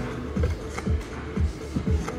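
Slot machine gamble-round music: an electronic loop with a steady kick beat, about two beats a second.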